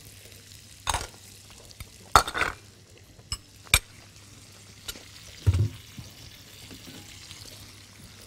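Cashews tipped into a pot of hot melted butter and raisins: a few sharp clicks and clatters over a faint sizzle of frying, with a dull thump about five and a half seconds in.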